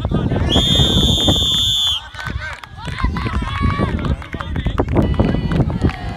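A whistle blown once in a long, steady, shrill note of about a second and a half, signalling the play dead. Shouting voices follow, over a low rumble of wind on the microphone.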